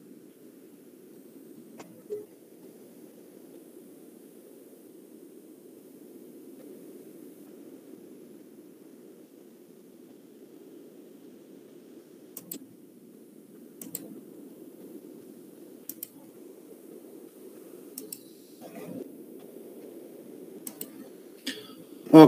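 Faint, steady low room hum with several isolated sharp clicks, most of them in the second half.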